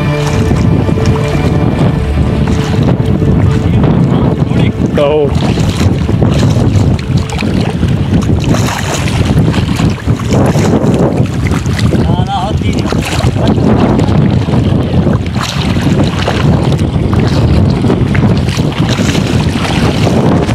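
Wind buffeting the phone's microphone: a loud, steady rumble over open floodwater, with a few brief voice fragments around 5 and 12 seconds in.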